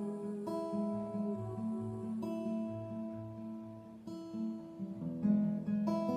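Acoustic guitar played alone with no voice, in a steady rhythm. A new chord is struck about every one to two seconds.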